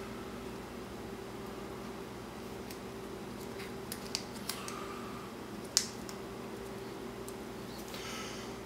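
Thin plastic credit-card folding knife being bent and folded into shape by hand: a few small, sharp plastic clicks and snaps in the second half, the loudest about six seconds in.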